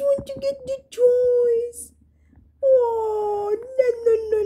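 Cavalier King Charles spaniel whining for a plush toy held just out of reach: two short whines, then a long one that slowly falls in pitch, with quick clicks in between.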